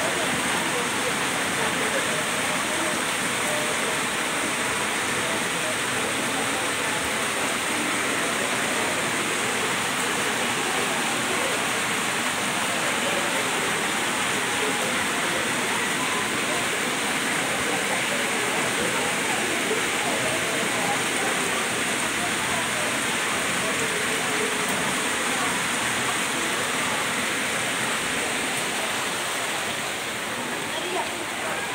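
Steady rushing of muddy floodwater pouring down concrete steps and across a flooded yard, mixed with heavy rain falling.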